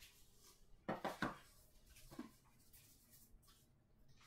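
Faint knocks and rustles of pipe boxes and cardboard being handled: a short cluster about a second in, a smaller one around two seconds, then a couple of tiny clicks.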